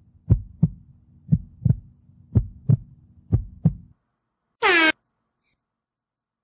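Heartbeat sound effect for suspense: four double thumps, about one a second, over a low hum, stopping about four seconds in. Near the five-second mark comes one short, loud, pitched sound effect.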